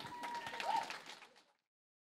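Guests applauding at the end of a toast, with a thin steady ringing tone over the first second. The applause fades out about one and a half seconds in, and the sound then cuts to silence.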